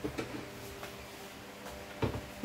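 Plates and dishes being handled on a table, with a couple of light knocks shortly after the start and another just under a second in, over a faint steady hum.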